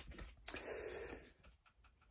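Quiet room tone with a few faint short clicks, one at the start and another about half a second in.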